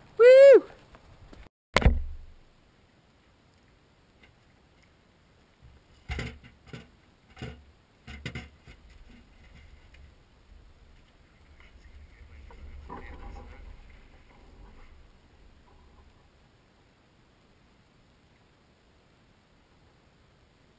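Pieces of a shredded shoe knocking against a galvanized metal bucket as they are stuffed in: about five sharp knocks close together, then softer rustling of the pieces being pressed down. It opens with a short loud cry falling in pitch and a single sharp thump.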